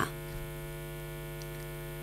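Steady electrical hum: several constant tones held at fixed pitches over a faint hiss.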